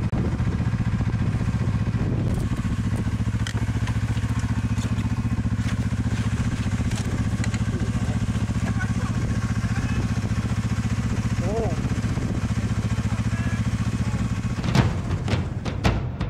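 Yamaha RS Venture snowmobile's four-stroke three-cylinder engine idling steadily at close range, with a few knocks near the end.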